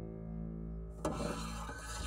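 Sound effect of a slatted ceiling vent cover sliding open: a rough scraping, rubbing noise that starts about a second in, over held background music notes.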